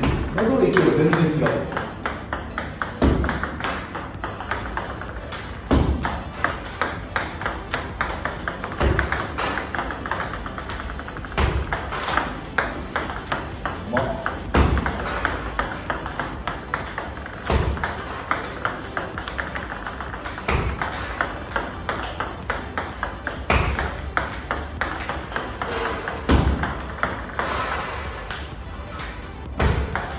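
Table tennis serves practised one after another: the bat striking the ball and the ball bouncing on the table as quick, sharp ticks, with a heavier knock about every three seconds.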